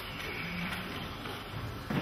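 Low room tone: a faint, steady hiss with a single short click right at the start.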